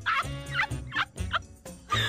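A turkey-like gobbling cackle in about five short warbling calls, used as a mocking stand-in for a laugh, over music with a steady low beat.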